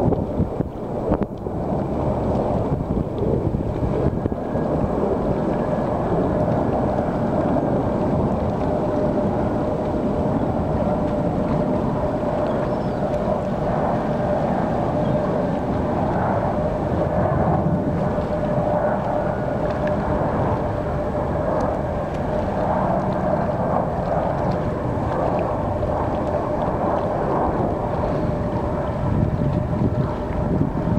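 Jet airliner on final approach, a steady engine drone with a constant whine running through it, under heavy wind rumble on the microphone.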